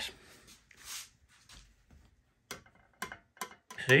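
Steel screwdriver tip tapping lightly against a galvanized sheet-steel shield: a run of quick, light metallic ticks over the last second and a half, after a faint breath about a second in.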